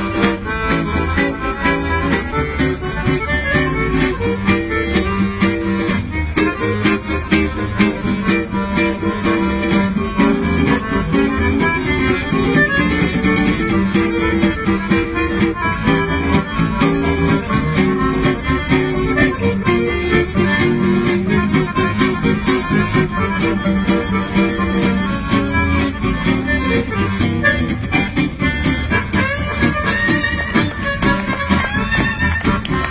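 Gypsy jazz trio playing live: violin, accordion and guitar, with the guitar strumming a steady rhythmic beat under the violin and accordion lines.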